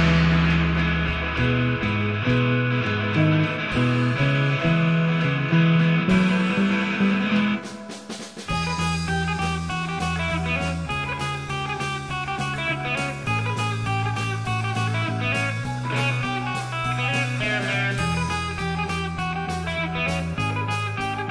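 Instrumental break of a rock song: guitar over bass and drum kit. About eight seconds in the level drops briefly, then a busier run of guitar notes begins.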